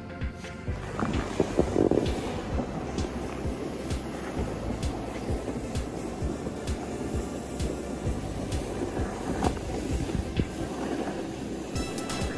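Snowboard sliding and scraping over chopped-up packed snow while riding downhill, a steady hiss with frequent short scrapes, with wind on the microphone and background music underneath.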